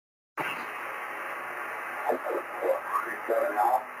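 Amateur radio receiver on a 10 GHz microwave link: hiss limited to a narrow band cuts in suddenly about a third of a second in, then a distant operator's voice comes through the speaker over the hiss from about halfway, speaking call-sign letters. On this path the voice still comes through clearly, not garbled by rainscatter.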